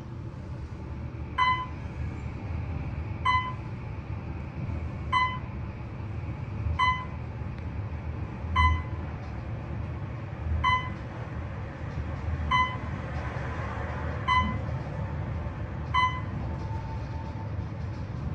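Otis traction elevator's floor-passing beep sounding as the car descends, ten short beeps about every two seconds, one for each floor passed. Under them is the car's steady low travel rumble.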